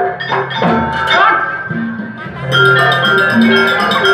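Traditional Banyuwangi gamelan-style ensemble music playing: repeated pitched notes from struck metal percussion over drumming. A fast, high metallic ringing pattern joins about halfway through.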